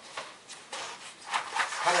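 A cardboard board-game box being handled on a table: a few light knocks and rustles.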